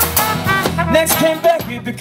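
Small acoustic band playing a song: strummed acoustic guitars and trumpet, with a man singing the next line of the lyrics.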